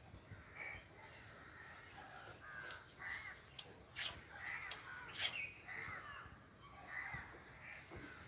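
Crows cawing, about six separate calls spread a second or so apart. A few sharp clicks or knocks fall between them, the loudest about five seconds in.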